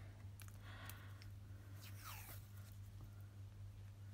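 Washi tape being peeled off its roll and handled, faint: light clicks and a short falling rasp about two seconds in as a length is pulled free.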